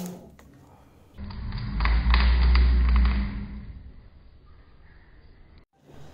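Car alternator spun by a pull on a thread wound around its shaft: a low whirring rumble that starts about a second in and dies away over the next few seconds as the rotor coasts down.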